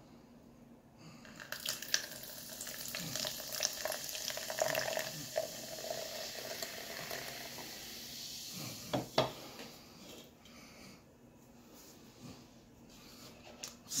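Energy drink poured from a can into a plastic shaker cup: a steady splashing pour starts about a second in and tapers off after about eight seconds. Two short sharp sounds follow just after.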